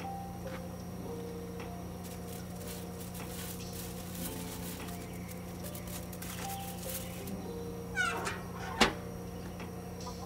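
Background music with a steady hum. About eight seconds in there is a short squeak, then a single sharp metallic clank: the steel lid of a barrel smoker-grill swung shut.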